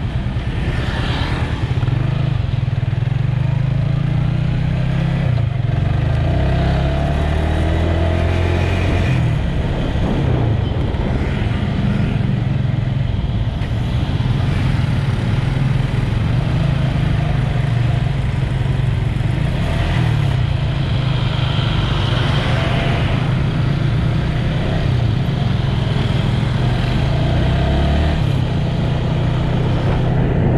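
Motorcycle engine running at riding speed through traffic, its note rising and falling with the throttle.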